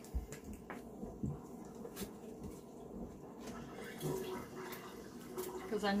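A dishwasher running in the background with a steady watery wash, with a few small clicks and knocks as a plastic spray bottle is handled.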